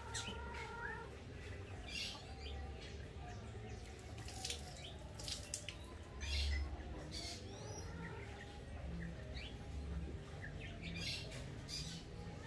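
Birds calling and chirping: many short high chirps and quick rising calls come one after another, over a low rumble.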